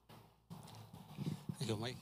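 Handheld microphone being passed from one man to another: faint handling rustle and light knocks on the mic body, with a brief voice asking "Mike?" near the end.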